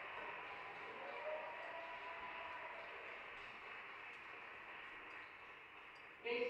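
Steady hiss with a few faint held tones: the quiet soundtrack of a documentary running under its title cards.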